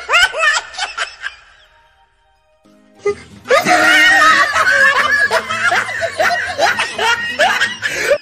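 Laughter over music: a short burst in the first second, then a quiet gap, then a long, loud stretch of dense, overlapping laughter from about three and a half seconds in.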